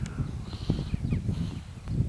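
Wind rumbling over the microphone of a handheld camera outdoors, with a few light knocks from handling as it pans.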